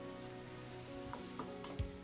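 Soft background music with held notes, over a faint sizzle of food frying in the pan, with a few light clicks in the second half.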